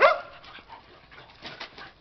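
A dog barks once, a single short, sharp bark right at the start.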